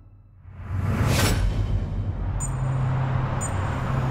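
A whoosh sound effect rises about a second in. Then comes a steady low rumble of city traffic, with a short high tick once a second from a little past two seconds in, like a countdown clock ticking.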